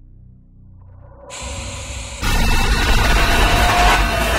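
Horror-film score and sound design: a low, dark drone, then a swelling rush of static-like hiss over a deep rumble that jumps to loud about two seconds in.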